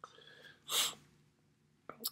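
A short, sharp breath noise from the narrator, lasting about a third of a second, a little after the first half-second.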